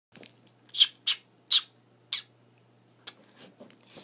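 Four short, high kissing smacks made with puckered lips, each about half a second apart. A fainter smack or click follows about three seconds in.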